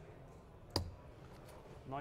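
A steel-tip dart striking a Unicorn Eclipse Pro 2 bristle dartboard: a single sharp thud about three-quarters of a second in.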